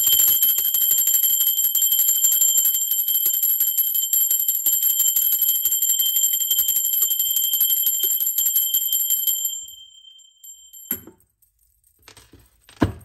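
Small handbell shaken rapidly and continuously, a fast run of clapper strikes over a steady high ringing, cutting off about three-quarters of the way through. It is rung as a ritual to close off the energy of the previous tarot reading before a new one begins.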